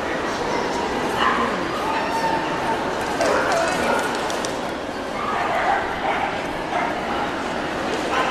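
Dogs yipping and barking briefly a couple of times over steady crowd chatter.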